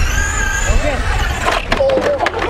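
Remote-control car's electric motor whining at a high, steady pitch after speeding up. Near the end the whine stops and a few sharp clicks and a voice follow.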